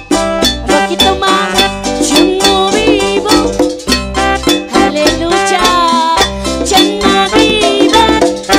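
Latin-style praise music: electronic keyboards playing a plucked-sounding melody over a steady, rhythmic beat of hand-played Matador congas.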